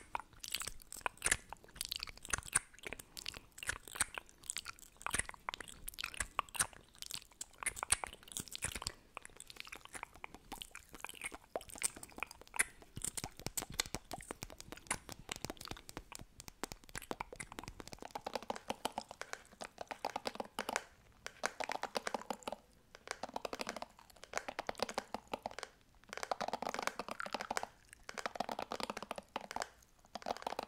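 Close-miked lip gloss sounds: applicator wands worked in and out of their tubes and sticky, wet smacking of glossed lips, a rapid string of small clicks. About halfway through they turn into denser bursts with short pauses.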